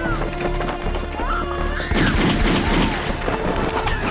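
Dramatic action-film score with held tones and swooping glides, mixed with sharp bangs about two seconds in.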